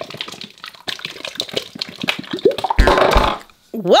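Thick slime squeezed out of a plastic bottle: a run of small wet pops and crackles, then a louder, longer squelch about three seconds in as the mass comes out.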